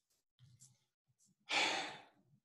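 A single short, breathy sigh, about one and a half seconds in, preceded by faint low murmuring.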